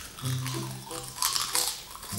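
Potato chips crackling as a handful is crammed into the mouth, strongest just past the middle, over background music with steady low notes.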